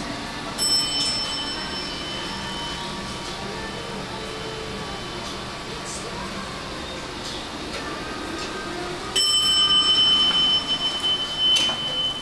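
ThyssenKrupp hydraulic elevator's chime: a bell-like tone about half a second in that dies away over a couple of seconds, then a second, louder tone from about nine seconds in that holds steady for several seconds. A few knocks come near the end.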